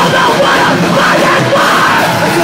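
Live rock band playing loudly, with the singer shouting a vocal line into the microphone.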